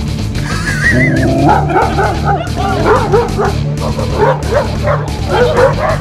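Dog barks and yelps, a run of short calls rising and falling in pitch starting about a second in, over background music.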